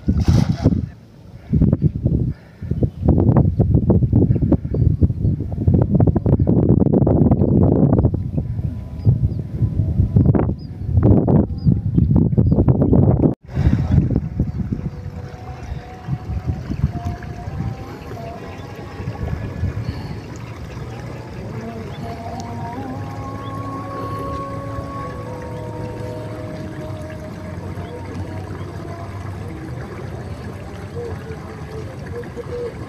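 Wind buffeting the microphone in heavy, gusty rumbles for about the first thirteen seconds, with a short splash right at the start as a thrown cast net lands on shallow paddy water. After an abrupt drop, a much quieter steady outdoor background with faint, wavering pitched sounds in the distance.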